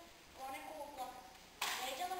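A girl's voice reading a text aloud, with a sharp hissing consonant near the end.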